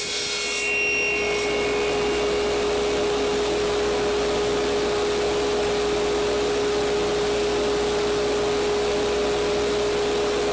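Table saw running with a steady whine. The blade cuts through a small square wooden pen blank during the first second and a half, then spins free.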